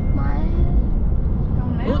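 Steady low rumble of a moving car, heard from inside the cabin, with a faint voice over it.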